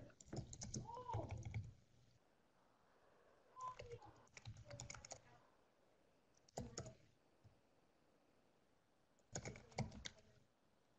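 Faint computer keyboard typing in four short bursts of rapid key clicks, with pauses between them.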